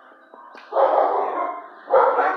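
A dog barking loudly in a shelter kennel: one bark about two-thirds of a second in, and another starting right at the end. The person filming takes it for the dog getting nervous about somebody.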